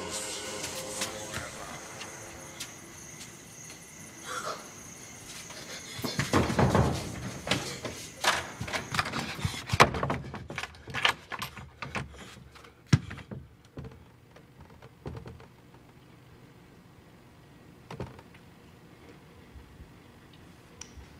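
Film sound effects: a run of knocks, thumps and clicks, loudest and most frequent from about six to thirteen seconds in, then mostly faint with an occasional single knock.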